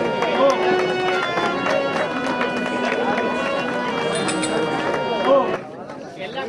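Live folk-theatre music with held reedy tones, drum strokes and a voice, cutting off suddenly about five and a half seconds in.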